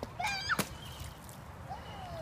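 A young child's short, high-pitched squeal that wavers in pitch, followed at once by a sharp click, then a softer, falling vocal sound near the end.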